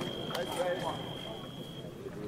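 Electric fencing scoring machine sounding one steady high-pitched tone for nearly two seconds, cutting off near the end: the signal that a foil touch has registered.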